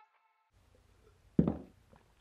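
The last note of background guitar music rings away, then faint room hum and a single short, dull knock about a second and a half in.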